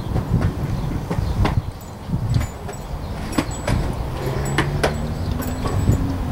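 Skateboard wheels rolling over pavement, a rough rumble with sharp clicks as they cross cracks and joints. A low steady hum joins about four seconds in.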